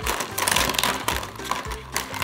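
Felt-tip markers clattering and rattling against each other and a plastic basket as a hand rummages through them, over background music.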